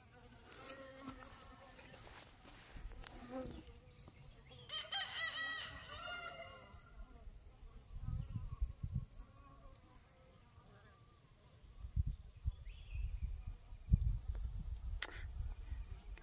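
Honeybees buzzing faintly around a cattle water tank, and a rooster crowing once in the background about five seconds in. Low rumbles on the microphone come in the second half.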